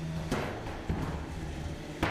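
3 lb combat robots fighting in the arena: a steady low motor hum with a sharp clattering impact about a third of a second in and a lighter knock about a second in.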